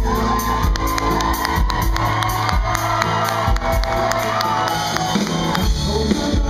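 Live band playing with strummed acoustic guitars, a long wavering high vocal note held for about the first four seconds, and whoops from the audience.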